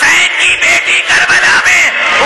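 Mourners weeping and wailing aloud, several high, breaking voices overlapping without pause, in grief at the recitation of the killing of Husain's infant son.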